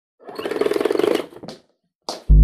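Logo-intro sound effect: a fast rattling buzz lasting about a second, followed by a brief high swish.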